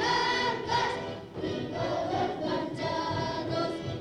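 A group of children singing a ronda (a circle-game song) together in unison, in phrases with short breaks between them.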